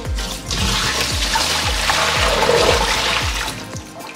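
Mop water poured from a bucket into a stainless steel sink, a splashing rush that builds to its loudest past the middle and tapers off near the end.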